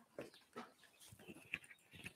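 Near silence: quiet room tone with a few faint short clicks and rustles.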